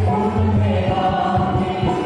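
Devotional music: a group of voices singing over a steady low drone, continuous and fairly loud.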